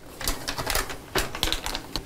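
Cleaner poured from a torn plastic pouch into the water of a toilet tank, fizzing and crackling in quick irregular clicks as it starts to foam up and bubble, with the pouch crinkling.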